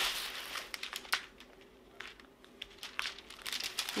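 Clear plastic cover film being peeled back from the sticky surface of a diamond painting canvas, crinkling. There is a burst of crinkling in the first second, then scattered small crackles.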